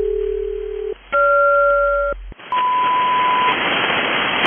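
HF aeronautical SELCAL call: two steady tone pairs, each lasting about a second with a short gap between. A low, close-spaced pair comes first, then a wider, higher pair, sending the code BC-FR to alert one aircraft's crew. The shortwave static then comes back with a steady single tone for about a second.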